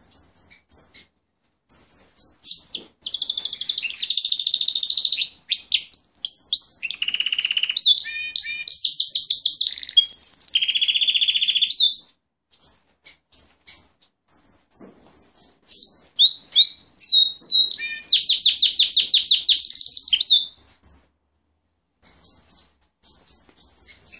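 Fife Fancy canary singing a long, loud song of rapid trills and rolls mixed with quick sweeping chirps, broken by two short pauses, one about halfway through and one near the end.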